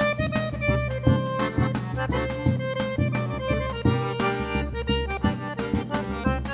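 Forró trio playing an instrumental passage: piano accordion carrying the melody over a steady zabumba bass-drum beat with triangle keeping time.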